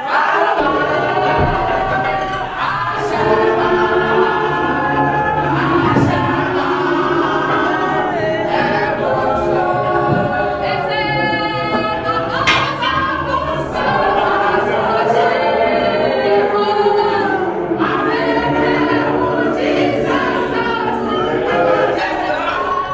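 A group of voices singing together in a choir-like way, steady and loud throughout.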